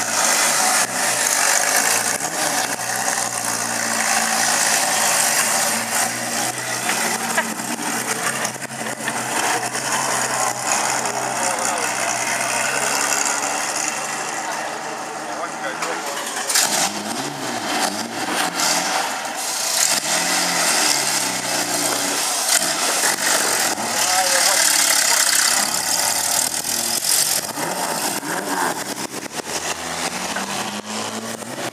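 Car engine running, steady at idle for the first half, then with its pitch shifting up and down as it is revved, under background voices.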